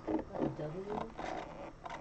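Quiet speech with light scraping and rubbing from gloved hands handling a clear plastic mini-helmet display case.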